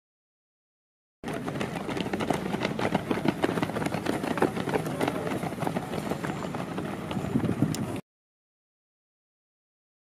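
Location sound of a pack of runners on a dirt track: many rapid, overlapping footfalls over a steady low rumble. It cuts in about a second in and cuts off abruptly about two seconds before the end.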